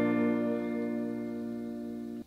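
A B-flat major barre chord on a clean-toned, Stratocaster-style electric guitar, held and left ringing, fading slowly.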